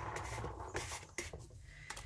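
A plastic card scraping across a craft mat as it pushes wet alcohol ink, faint, followed by a few light clicks.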